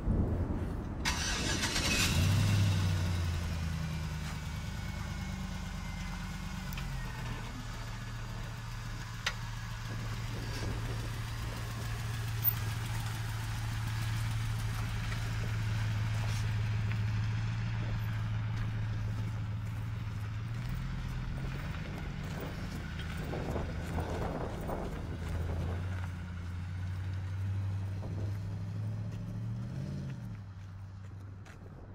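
A lifted GMC Sierra pickup's engine starting about a second in, then idling steadily with a low hum that shifts slightly in pitch a few times.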